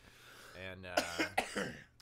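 A man coughing, a few short coughs in quick succession about a second in, between spoken words.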